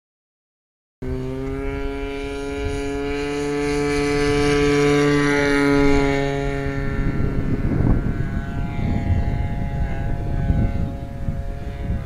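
Engine of a large radio-controlled scale model Beaver aircraft, cutting in about a second in and running at high power. Its pitch rises a little, then drops about halfway through as the plane goes away, with rough wind noise on the microphone.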